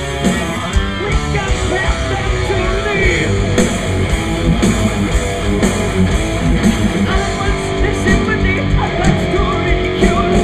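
Heavy metal band playing live, with electric guitars, bass and drums.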